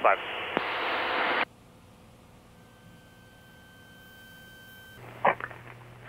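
Aircraft radio static hiss over the cockpit intercom, cutting off abruptly after about a second and a half as the transmission ends. The line then goes quiet apart from a faint steady tone, and near the end a low hum comes in with the start of the next radio call.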